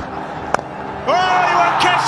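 Cricket broadcast: a low crowd murmur, then the single sharp crack of bat on ball about half a second in. Just after a second the crowd noise rises and a commentator starts speaking.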